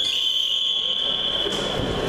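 An electronic match-timer buzzer sounds one long, steady, high-pitched tone lasting about two seconds. It signals a stop in the wrestling bout.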